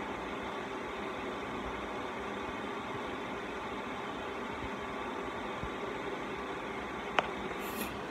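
Steady background hiss and faint hum of room tone, with one short click about seven seconds in.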